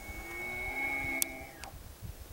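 Bull elk bugling: a high, steady whistle held for about a second and a half with lower tones sounding beneath it, cut off near the end with a sharp click.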